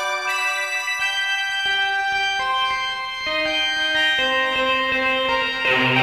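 Synthesizer music: Sonic Pi's internal synths layered with patches from a Korg X5DR synth module, playing sustained, organ-like notes picked at random from a minor pentatonic scale. A new note comes in about every half second to second.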